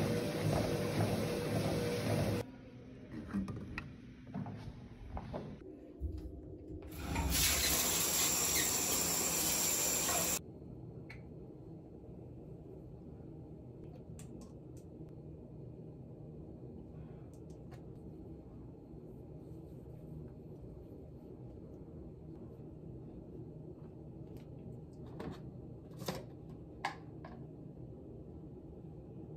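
A treadmill running, then a few seconds of loud running water that cuts off suddenly. After that comes a long steady low hum, with a few light clicks and taps near the end as skincare containers are handled at a bathroom sink.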